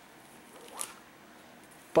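A brief plastic swish of a comic book's protective sleeve being shifted in the hands, a little before the middle, over low room tone.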